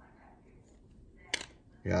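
One short, sharp click of trading cards being handled as the top card is slid off the stack to reveal the next, over quiet room tone; a man's voice starts near the end.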